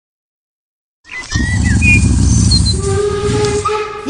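Opening sound effect: after a second of silence, a loud low rumble starts with a few short high chirps over it. Past the middle, a steady whistle-like tone with several pitches comes in and holds.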